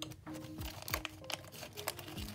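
Clear plastic binder sleeve crinkling as a sticker sheet is slid into it, in short irregular crackles, over soft background music.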